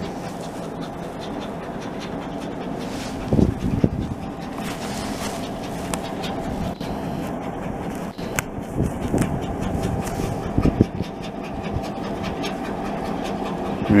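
EMD diesel locomotive engine running steadily: a low, even throb, with a few short louder swells.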